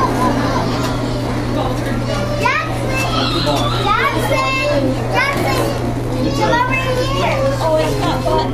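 Young children's voices mixed with indistinct adult chatter, with several high rising child calls through the middle. A steady low hum runs underneath.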